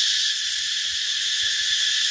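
A steady, high-pitched insect chorus, unbroken and even.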